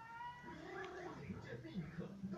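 A kitten meowing, with a rising-and-falling meow about half a second in.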